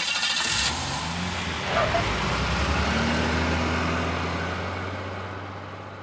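Motor vehicle driving away, its engine hum and road noise fading out steadily over the last few seconds.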